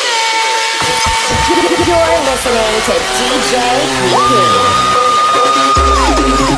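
Electronic dance music from a DJ's nonstop mix played over a PA system, in a breakdown: held synth tones with a voice over them and no bass, a higher tone coming in about four seconds in, and the bass returning near the end.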